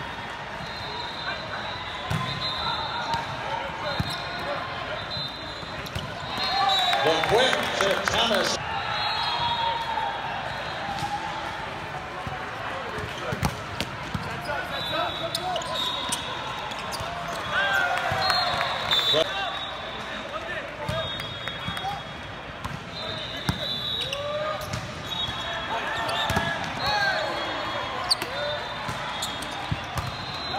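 Indoor volleyball play: the ball being served and struck in rallies, sneakers squeaking on the court, and players' voices calling out. The sound is loudest in two spells of play, about a third of the way in and a little past halfway.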